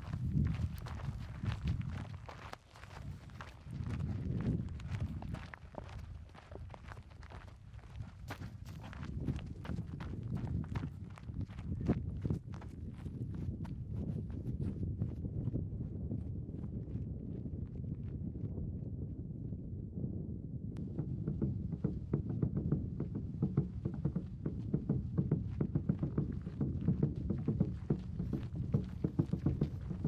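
A child's footsteps on dry dirt and gravel: a quick, irregular run of crunching steps over a steady low rumble.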